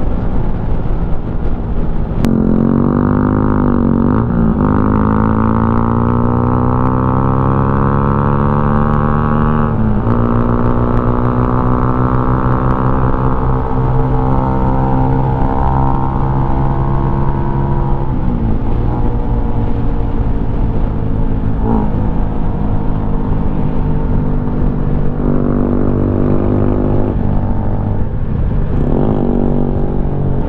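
Benelli VLX 150's single-cylinder engine pulling under way: its pitch climbs steadily, drops sharply at a gear change about ten seconds in, climbs again, then settles into a steady cruise.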